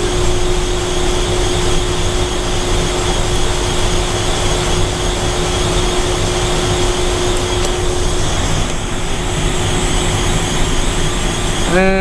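Refrigeration equipment running close by: a steady, loud mechanical noise of fan and compressor, with a steady hum that stops about eight seconds in.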